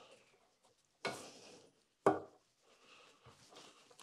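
An adjustable wrench working a thin bolt on a motorcycle cylinder head, with metal-on-metal tool sounds. There is a short scrape about a second in, a sharp knock a second later, then faint small ticks.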